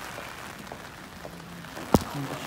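Steady hiss of rain falling on a wet paved square, with one sharp click near the end.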